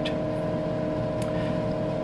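Steady machine hum with several fixed tones from a running Tektronix 4054A vector graphics computer, with one faint tick a little over a second in.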